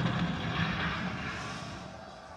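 Offstage battle sound effect in a stage play: a rushing, rumbling roar that fades away steadily.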